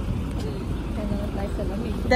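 A bus driving past close by on the street, its engine a steady low rumble, with faint voices in the background.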